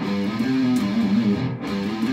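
Electric guitar playing a short picked metal riff with slides, the figure starting over after a brief break about one and a half seconds in.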